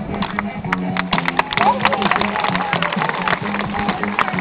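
Street music with a steady low note and crowd voices, over a run of sharp, irregular clicks and taps that grow denser after about a second.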